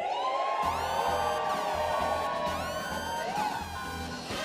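Dramatic comedic music sting: a pulsing bass beat kicks in about half a second in, under repeated swooping pitch sweeps roughly once a second.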